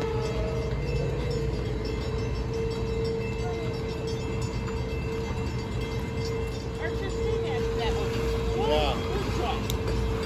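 Low rumble of a motor yacht's engines as it comes through the channel, growing a little louder near the end, with a steady hum throughout. Children's voices are heard briefly toward the end.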